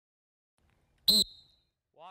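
A lifeguard's whistle blown once about a second in: one short, loud blast with a high tone that rings on faintly for about half a second.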